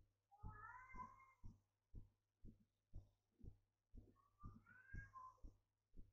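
Faint recording of two drawn-out animal calls with wavering pitch, one near the start and one about four seconds in, over a soft regular tick or thump about twice a second.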